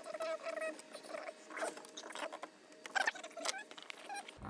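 Squeaky chirps and small clicks of plastic 3D-printer filament being forced by hand through a Prusa MK3S extruder, with one sharper click about three seconds in.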